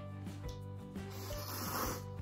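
Thick ramen noodles being slurped: a long airy slurp that builds through the second half, over background music.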